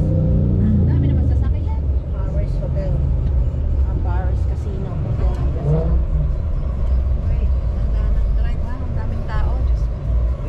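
Steady low rumble of a moving vehicle's engine and road noise heard from inside, with indistinct voices talking at intervals over it.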